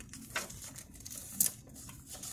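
A picture book's page being handled and turned: faint paper rustling with two short sharp clicks, about a second apart.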